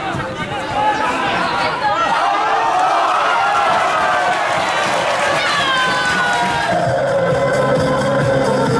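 Spectators shouting and cheering as a goal is scored, many voices at once. Music comes in near the end.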